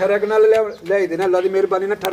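A man's voice, with pitch wavering and some sounds drawn out.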